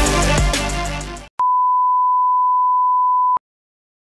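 Background music fades out in the first second, then a single steady electronic beep at one pitch sounds for about two seconds and cuts off suddenly.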